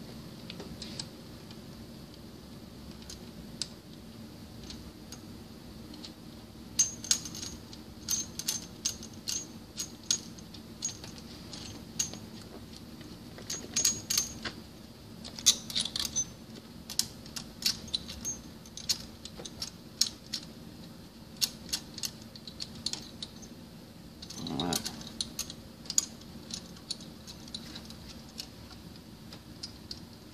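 Irregular light metallic clicks and clinks of steel parts and hand tools on a mechanical seal and its bolts inside a centrifugal pump's bearing frame, as the seal is positioned and secured. A single louder clunk comes near the end.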